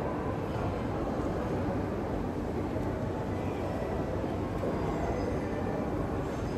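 Steady low rumbling background noise that holds at an even level, with no distinct events standing out.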